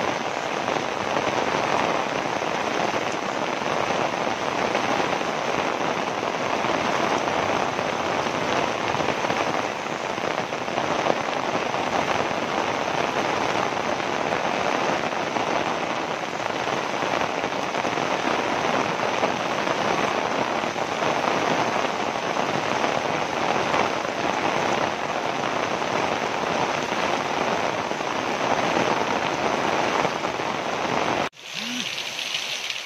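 Heavy rain falling steadily in a downpour, an even hiss of rain on the ground and roofs.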